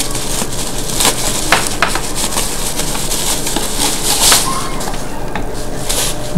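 Plastic bubble wrap crinkling and rustling as it is pulled off a small plastic satellite speaker, with sharp crackles throughout and a louder burst of crackling about four seconds in.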